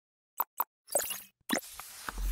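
Animated-logo intro sound effects: two short pops close together about half a second in, then two longer, brighter effects with sparkly high tones, one about a second in and one near the end.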